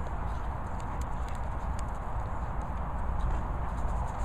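Steady low rumble of wind buffeting the microphone, with faint scattered clicks on top.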